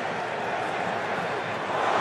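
Stadium crowd noise from a large football crowd, a steady wash of voices that swells near the end.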